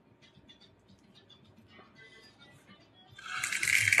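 Nerds candies rattling inside their small cardboard box, a loud rattle lasting about a second that starts about three seconds in. Before it, faint background music.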